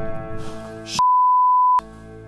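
A censor bleep: a single steady, high beep lasting just under a second, starting about a second in. The music and all other sound drop out beneath it, marking a swear word cut from the soundtrack. Sustained music chords play before and after it.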